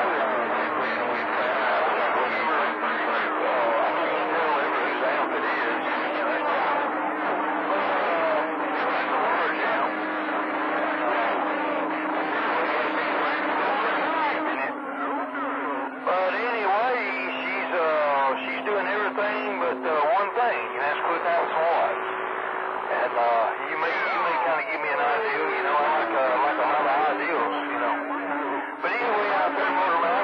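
CB radio receiving skip on channel 28 (27.285 MHz): voices of distant stations come through the receiver's speaker, cut off at the top like radio audio. Steady whistling tones from other carriers sit under them, and about three-quarters of the way through a whistle slides down in pitch.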